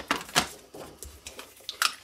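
Clicks and knocks of a plastic paper punch and cardstock being picked up and handled on a craft mat, with a sharp click about half a second in and another near the end.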